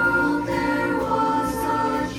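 High school vocal jazz ensemble singing close-harmony chords into microphones, holding sustained notes that shift pitch once or twice.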